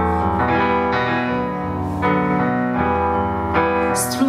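Digital keyboard playing piano chords, a new chord struck about twice a second, with no voice over it.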